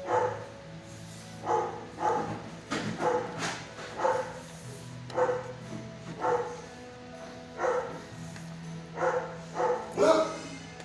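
Dog barking repeatedly in short barks, a dozen or so, roughly once a second, with steady low tones underneath.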